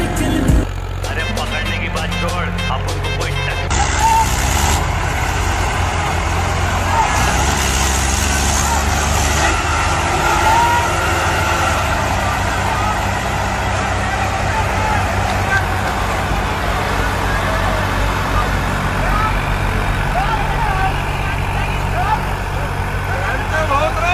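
Diesel tractor engine running steadily under load while pulling a disc harrow through ploughed soil.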